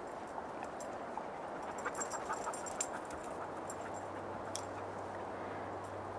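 A dog panting steadily, with a few faint sharp clicks and crackles between about two and three seconds in.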